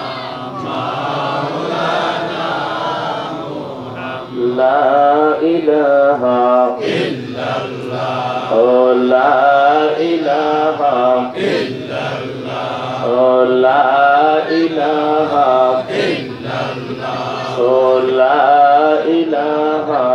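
A man chanting Islamic dhikr into a microphone, in repeated melodic phrases a few seconds long. The first few seconds are quieter, and the later phrases are louder.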